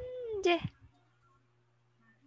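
A voice holding a long drawn-out "and…", its pitch gliding up and then down, cut off about two-thirds of a second in. After it there is only a faint steady low hum.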